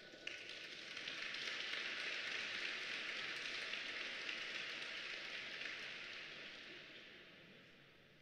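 Thin applause from a small crowd in an ice rink at the end of a figure skating programme. It swells over the first couple of seconds and then slowly dies away.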